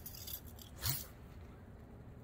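A fishing cast with a spinning rod: a quick swish as the rod swings forward and line runs off the reel, then a short, sharper sound just under a second in.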